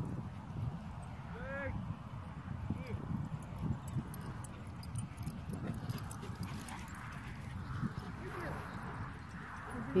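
Low, uneven rumble of wind on a phone microphone outdoors, with a short distant dog yelp about one and a half seconds in.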